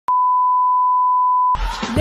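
A steady 1 kHz line-up test tone, the reference tone that accompanies SMPTE colour bars. It cuts off about a second and a half in as music begins.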